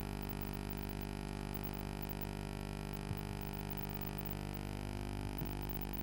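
A steady low hum of many fixed tones with a faint hiss underneath; no distinct event stands out.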